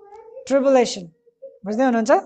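Two short drawn-out vocal calls with rising-and-falling pitch, about half a second each, over a faint steady hum.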